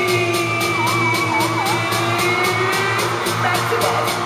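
Live arena concert music played loud over the PA: an electronic beat with a steady bass and fast, even high ticks, with a held high line that wavers up and down partway through; crowd noise underneath.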